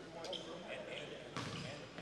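Indistinct voices of players and coaches talking on a gym court, with a single basketball bounce about one and a half seconds in.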